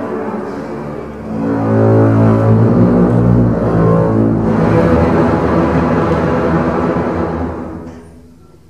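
A large double bass ensemble playing bowed, sustained low chords. The sound swells louder about a second and a half in, holds, then dies away near the end.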